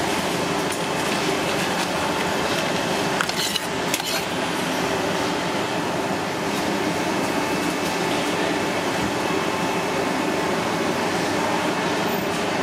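Steady, even background noise, like traffic or a running fan, with a few brief clicks about three to four seconds in from a knife working a spiky conch shell against a plastic cutting board.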